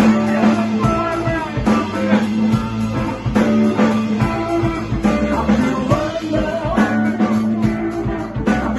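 Live blues band playing: electric guitar lines over electric bass and drums.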